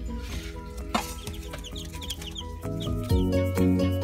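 Newly hatched chicks peeping, a run of short high cheeps in the first couple of seconds, over background music. Louder music takes over near the end.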